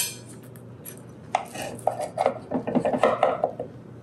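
Knife cutting through a baked crescent-roll crust in a glass baking dish: a quick run of short scrapes and taps, starting about a second in.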